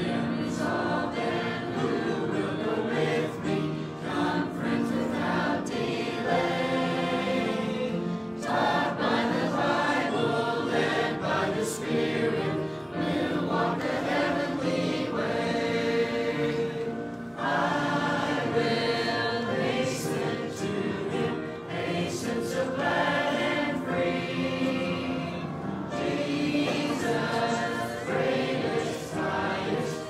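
A church congregation singing a hymn together, in long phrases with a short break between lines about every nine seconds.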